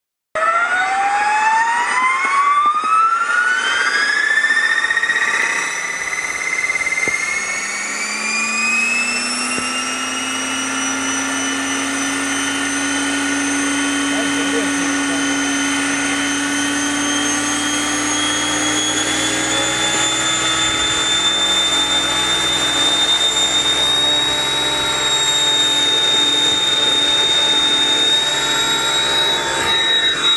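Align T-Rex 700E electric RC helicopter spooling up: the brushless motor and gear whine rise steadily in pitch over the first ten seconds or so, then climb more slowly and level off into a steady high whine with the rotor.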